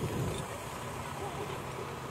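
A steady low engine hum, with faint voices in the distance.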